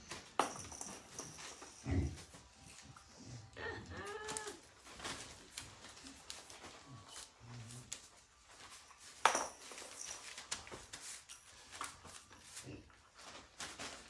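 Young puppies making brief, faint high cries, with scattered clicks and knocks, one sharp click about nine seconds in.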